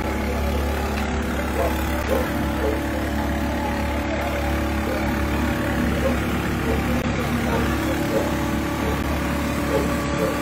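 A steady engine hum, like a motor running at idle, with indistinct voices in the background.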